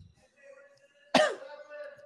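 A man coughs to clear his throat once, a little over a second in, sharp at first and trailing off into a faint held tone.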